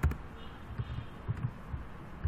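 Computer keyboard keys being pressed: a string of dull, low thumps at an irregular pace, the first the loudest with a sharp click.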